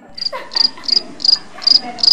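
A cricket-chirp sound effect, the comic 'crickets' gag for an awkward silence: a run of about six evenly spaced high chirps, a little under three a second.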